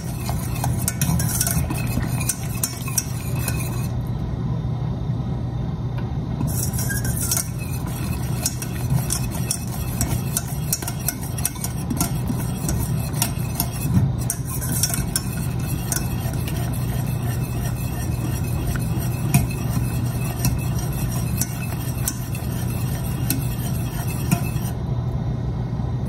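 Wire whisk stirring a thin liquid in a stainless steel saucepan, with continuous swishing and frequent light clinks and scrapes of the wires against the pan's sides and bottom. The liquid is a cocoa, butter and evaporated-milk mixture being heated toward a low boil.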